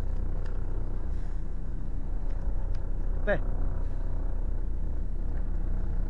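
A boat engine running steadily with a low, even drone.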